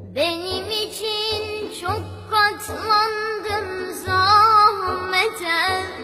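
A song: a high solo voice sings a melody over a low drum beat, with a louder held, wavering note about four seconds in.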